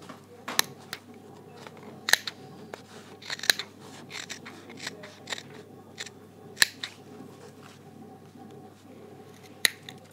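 Small scissors snipping through blazer fabric in short, irregular cuts, a dozen or so sharp snips spaced unevenly, one of the sharpest near the end. This is the cut opening the welt pocket and clipping in toward its corners.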